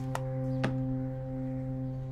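Soft background music: a held chord of steady, ringing tones, with two light clicks in the first second.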